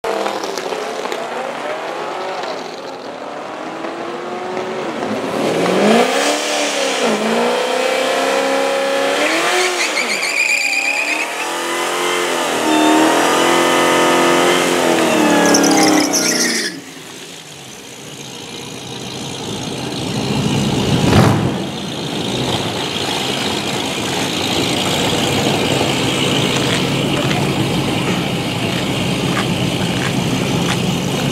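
Supercharged 6.2-litre Hemi V8 of a Dodge Challenger SRT Hellcat revving hard in a burnout with tyres squealing, its pitch rising and falling repeatedly, for about the first sixteen seconds. The sound then drops suddenly to the engine idling at the line, with one brief loud burst about twenty-one seconds in.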